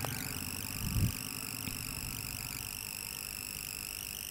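Steady low-level background hum with faint high whining tones, and one soft low thump about a second in.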